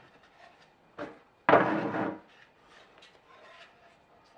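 A plastic-cased solar charge controller handled and set onto its plastic back cover on a wooden table: a short knock about a second in, then a louder scraping clatter lasting under a second, with faint scuffs around it.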